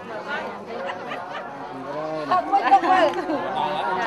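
Several people chattering over one another, with one voice rising louder a little past halfway through.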